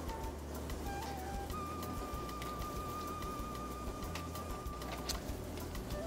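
Quiet background music: a few soft notes, then one long held note with a slight waver, over a low steady hum.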